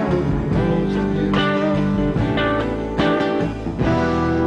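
Band music: an instrumental passage led by guitar, with no singing.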